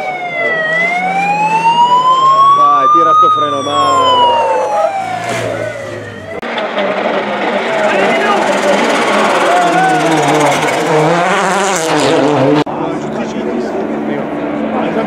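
Volkswagen Polo R WRC rally car's turbocharged four-cylinder engine at full throttle: its pitch climbs steadily for about three seconds, then falls away as it lifts or passes. About six seconds in the sound cuts to the car going by close at speed, a dense rush of engine and tyre noise.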